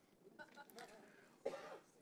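Near silence with faint room murmur, and a brief, faint cough about a second and a half in.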